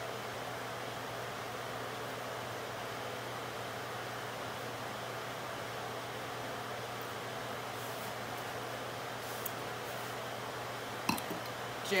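Steady room tone: a low, even hiss with a faint hum, broken only by a few faint clicks in the second half.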